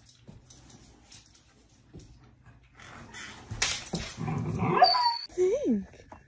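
German Shepherd dogs playing rough: faint scuffling at first, then, about three and a half seconds in, a loud rough stretch of dog growling and whining lasting over a second, ending in a short rising and falling whine.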